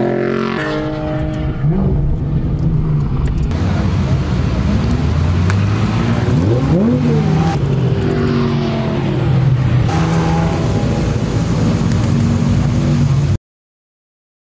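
Maserati GranTurismo's 4.3-litre V8 running loudly at low speed, with one quick rev up and back down about halfway through. The sound cuts off suddenly near the end.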